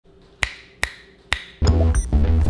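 Three finger snaps, each under half a second apart, followed near the end by intro music with a heavy bass line.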